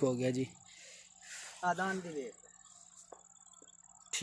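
Two short snatches of a man's voice with quiet between, over a steady high-pitched thin tone that runs throughout.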